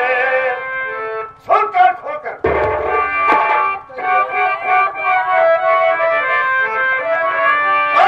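Nautanki folk-theatre music: a harmonium holding sustained notes, with one deep drum stroke that booms briefly about two and a half seconds in. Short bursts of a man's voice come through at moments.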